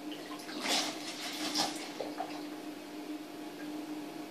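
Lemon juice squirted from a plastic squeeze bottle into a plastic measuring jug: two short liquid splashes in the first two seconds, over a steady low hum.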